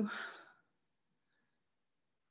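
A woman's short breathy exhale trailing off the end of her last word and fading within half a second, then silence.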